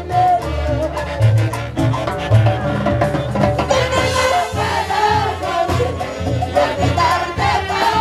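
A live stage band with saxophones and congas playing amplified Latin dance music, with a steady, beat-driven bass line and melodic lines on top.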